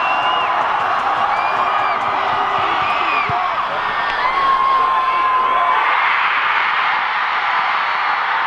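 Stadium crowd noise with scattered shouts and whoops during a field goal attempt, swelling into loud cheering about six seconds in as the game-winning kick goes good.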